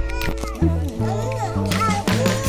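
Background music: a track with a steady, changing bass line, held chords and high, sliding voices.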